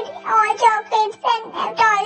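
A high-pitched cartoon character's voice speaking a line of dialogue in a sing-song way, over light background music.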